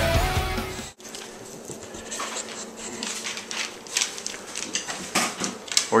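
Rock music fades and cuts off about a second in. A quiet stretch follows with scattered small clicks and scuffles as an English bulldog moves about on a vinyl floor, growing a little busier near the end.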